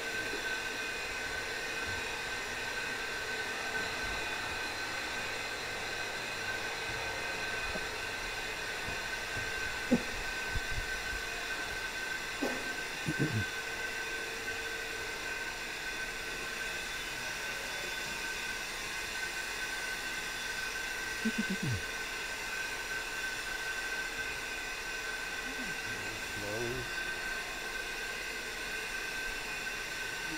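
Steady machinery hum of a working whisky distillery still house, with a constant high whine running through it. A few faint, brief voices are heard now and then.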